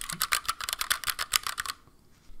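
Mechanical key switches (not Cherry) of a 48-key Koolertron keypad pressed in quick succession: a rapid run of light clicks, not really loud, that stops near the end.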